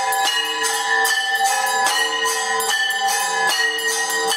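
Brass temple bells rung rapidly for aarti: sharp strokes about three to four a second, their ringing tones sustained between strokes.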